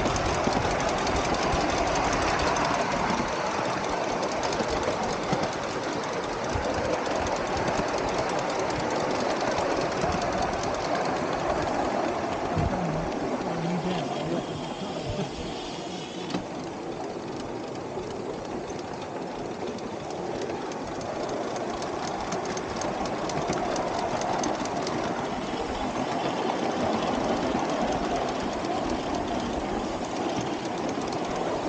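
Miniature live-steam locomotive running along the track with a passenger car in tow: a steady rhythmic exhaust beat mixed with the rattle of the car's wheels on the rails.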